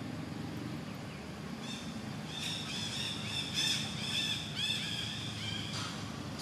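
Baby monkey squealing: a run of short, high-pitched calls about three a second, starting about two seconds in, over a steady low rumble.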